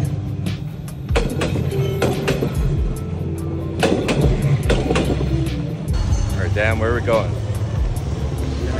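Background music with a singing voice that wavers in pitch about six seconds in, over a steady low rumble.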